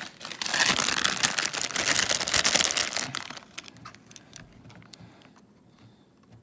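Plastic blind-bag packet of a Hot Wheels Mystery Model crinkling as it is torn open and the die-cast car pulled out. The crinkling is loud for about three seconds, then thins to a few faint rustles and clicks.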